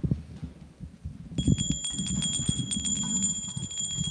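A small hand bell starts ringing about a second and a half in, a steady high ringing with the rapid clatter of its clapper, over low thuds of people moving about.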